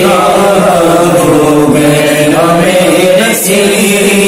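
A man singing an Urdu naat in long, ornamented held notes whose pitch glides up and down, with barely a break for breath.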